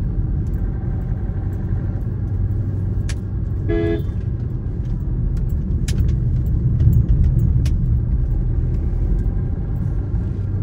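Steady low rumble of a vehicle driving on a paved road, heard from inside the cabin. A short horn toot comes about four seconds in, and there are a few sharp rattling clicks.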